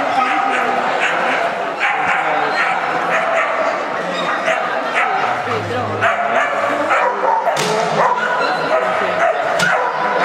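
Dogs barking and yipping over a background of voices, with two sharp knocks in the last few seconds.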